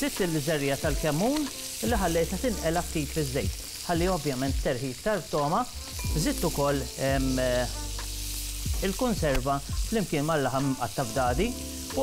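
Food sizzling as it fries in oil in a stainless steel cooking pot, stirred with a spatula. Pitched sounds that rise and fall every fraction of a second run over the sizzle throughout.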